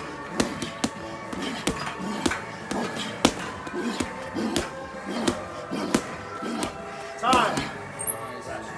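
Boxing gloves striking a heavy punching bag in steady combinations, roughly two sharp hits a second, over music. Short voice-like grunts come with some of the strikes, and a louder vocal sound comes near the end.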